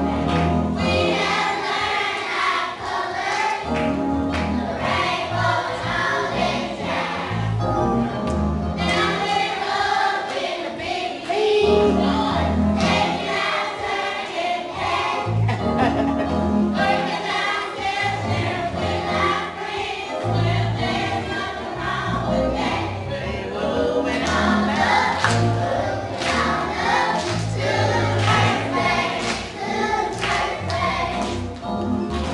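Choir music: many voices singing together over a bass line that repeats in regular phrases.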